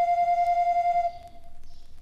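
Odin 42-key mechanical barrel organ holding one long flute-like pipe note, which cuts off suddenly about a second in, leaving a faint lingering tone.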